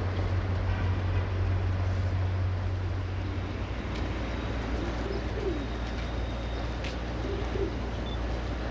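Doves cooing, a few low coos around the middle and near the end, over a steady low rumble that eases a little about halfway through; one sharp click comes shortly before the end.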